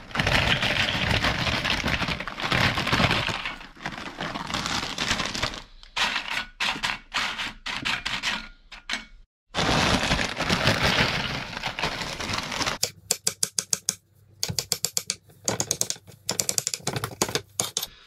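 Foil bag of tortilla chips crinkling as the chips are shaken out and clatter into a ceramic dish, with a short break about halfway. From about two-thirds of the way in, a knife chops rapidly on a wooden cutting board in quick runs of strokes.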